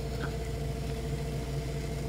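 Electric potter's wheel running with a steady motor hum while a loop trimming tool shaves a ribbon of leather-hard clay off the base of the spinning pot.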